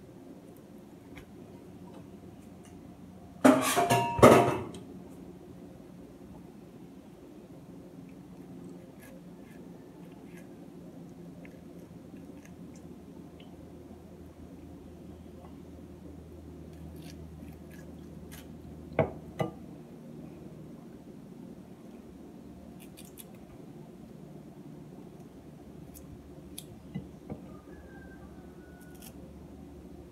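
A knife cutting pieces from a hand-held pineapple, with a loud clatter lasting about a second near the start and two sharp knocks around the middle; a steady low hum runs underneath.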